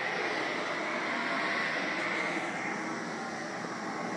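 Steady outdoor background noise, an even hiss with a faint high hum running through it and no distinct events.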